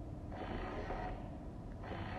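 Touchless soap dispenser's small pump motor running briefly as a hand passes under its infrared sensor, then starting again near the end.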